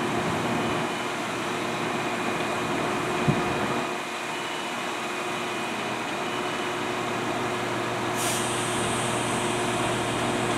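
Irish Rail 22000 class diesel multiple unit standing at the platform with its underfloor diesel engines idling, a steady hum with a few held tones. A single short thump comes about three seconds in, and a brief hiss near the end.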